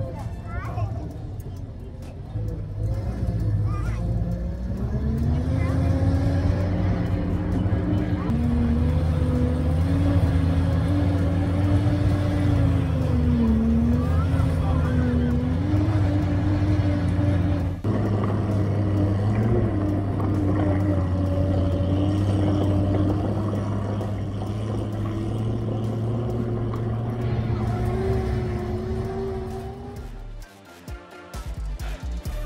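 The tracked 1943 Studebaker M29 Weasel running under way, its Studebaker six-cylinder engine holding a steady drone whose pitch rises and falls with the revs. The pitch shifts at several points and changes abruptly about two-thirds of the way through.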